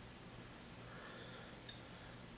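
Faint sounds of a hand screwdriver turning a screw into a wine cork, with one small click near the end, over a low steady hum.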